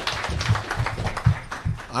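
Hearing-room background between speakers: low, muffled rumbling with a few soft knocks near the microphone, and the start of a man's voice at the very end.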